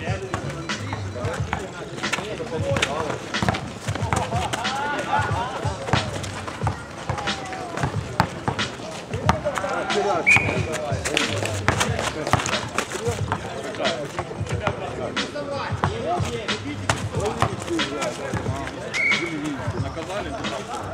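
A basketball bouncing on an outdoor asphalt court as it is dribbled, with repeated knocks of ball and footsteps under players' and onlookers' distant voices. Two short high chirps come about ten seconds in and near the end.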